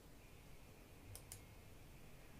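Near silence with faint room tone, broken by two quick faint clicks a little over a second in, from a computer keyboard or mouse being used to pick an entry.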